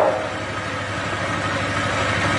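A steady low hum with an even hiss over it, without speech.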